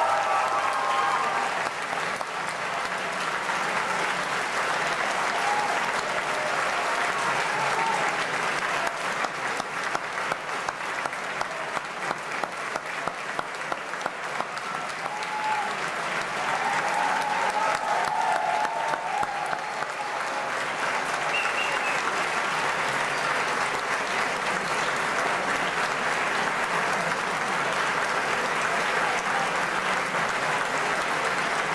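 Audience applauding. About ten seconds in, the clapping falls into a steady rhythm for a few seconds, and some voices call out over it.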